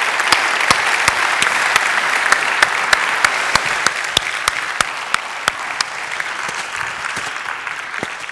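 Audience applauding, many claps together, loudest at first and slowly dying away toward the end.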